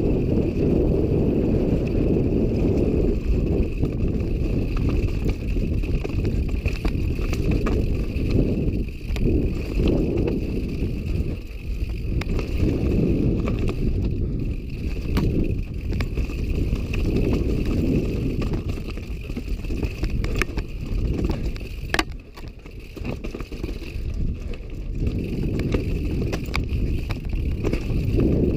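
Wind buffeting and trail rumble on a helmet- or bike-mounted action camera's microphone as a downhill mountain bike descends a rough dirt and rock trail, with scattered sharp clacks and rattles from the bike hitting rocks and roots. The noise lulls briefly about three-quarters of the way through.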